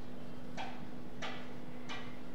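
Marker pen squeaking on a whiteboard in short, quick strokes, three in the two seconds, over a steady low hum.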